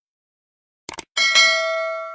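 Subscribe-button sound effect: a quick double mouse click just before a second in, then a bright bell ding that rings on and slowly fades.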